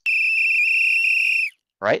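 A whistle blown once: a single steady high-pitched note of about a second and a half that cuts off suddenly, played back as a recorded sound clip.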